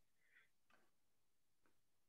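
Near silence: room tone with a couple of very faint ticks.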